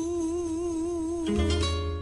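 A woman singing a Peruvian criollo song holds one long note with vibrato over acoustic guitar. About a second and a half in, the voice breaks off and a guitar chord rings out.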